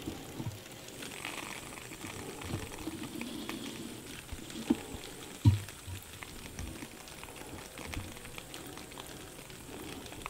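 Water mister spraying a fine stream into a glass terrarium, with water spattering and running down the glass. Two sharp knocks stand out near the middle.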